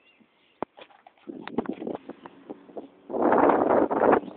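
Bird calls, then a loud burst of rushing noise lasting about a second near the end.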